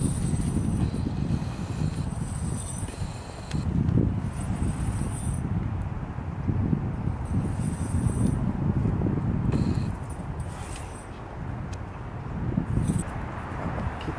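A climbing rope being hauled hand over hand to hoist a Quickie connector up into a tree, a rough rustling in repeated pulls with a few light metallic clinks.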